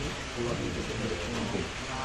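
A low-pitched voice intoning a ritual prayer in short, wavering phrases over a steady background hiss.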